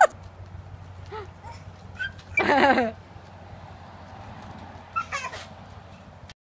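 An animal calling: faint short calls about one and two seconds in, a louder drawn-out call a little after two seconds, and another near the five-second mark, over a steady low hum.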